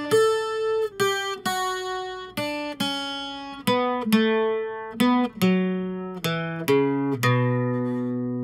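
Acoustic guitar playing a slow single-note requinto run: picked notes about every half second, stepping down from the high strings to the bass strings. The last note, a low B, rings out near the end.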